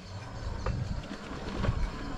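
A homemade 1500 W electric bike being ridden over a rough, grassy woodland track: a steady rumbling, rattling ride noise from the tyres and frame, with a couple of brief clicks.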